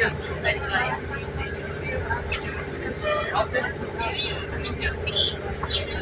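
Passenger train running, heard from inside the carriage: a steady low rumble with a constant hum, and passengers talking over it.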